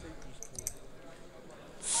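Steel-tip darts clicking against each other as they are pulled from the dartboard, over a low murmur of the hall. Near the end a referee's voice loudly calls the score, "fifteen".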